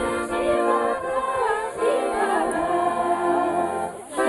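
A group of women singing a folk dance song together, with steady accordion chords underneath; the singing pauses briefly near the end.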